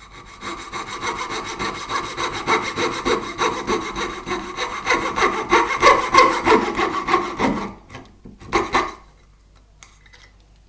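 Wooden-framed coping saw cutting out dovetail waste in wood with quick back-and-forth strokes. It saws steadily for most of the time, then gives two last strokes and stops.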